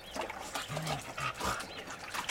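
A dog giving a few short, low vocal sounds, with water splashing in a tub around them.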